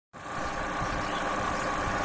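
Vauxhall Corsa's Ecotec petrol engine idling steadily, with a decade box standing in for its coolant temperature sensor to test a misfire and poor cold start that set no fault codes.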